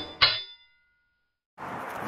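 Two bright metallic chime strikes, a quarter second apart, ringing out and fading within half a second. Silence follows, then faint room noise comes in near the end.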